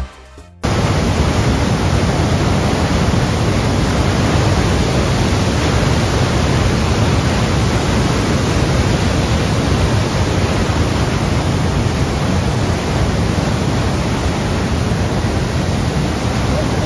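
Steady roar of Niagara Falls: a dense, unbroken rush of falling water that starts about half a second in and holds at an even level.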